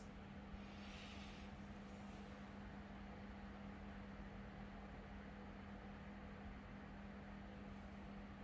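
Near silence: quiet room tone with a steady low hum over faint hiss.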